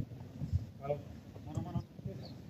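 Footballers shouting short calls to each other across the pitch, heard from a distance, with a dull thud about half a second in.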